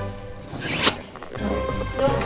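A quick rising zip-like swish sound effect, a little under a second in, over background music.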